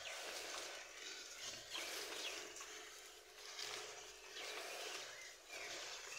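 A few short, high chirps of small birds, each falling in pitch, over a steady hiss.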